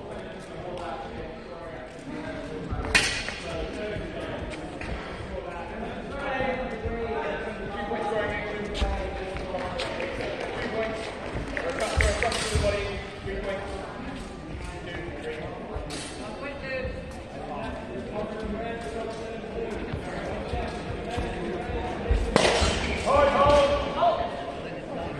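Echoing chatter of voices in a large sports hall, broken by a few sharp clashes of steel sparring longswords, some with a brief metallic ring, and thuds of footwork on the hall floor. A louder burst of clashes and a raised voice comes near the end.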